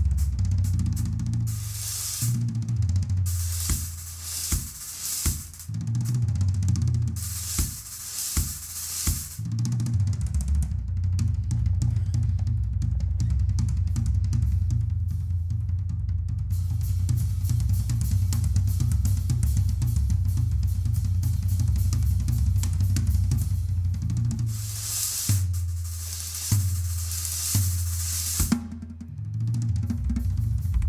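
Solo on a Ludwig drum kit. In the first ten seconds and again near the end, cymbal washes and crashes ride over bass drum and toms. In between comes a long stretch of fast, dense bass drum and tom strokes under quick, light ticks.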